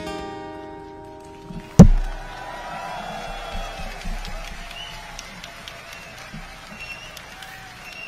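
Acoustic guitar's final chord ringing out and fading, cut about two seconds in by a single sudden loud thump with a low rumble after it. Faint audience applause and cheering follows.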